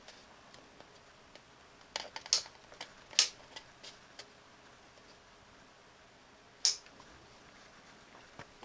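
A few short sharp clicks and small knocks, the loudest about three seconds in, from a battery-powered electric fly killer lamp being handled and its switch pressed.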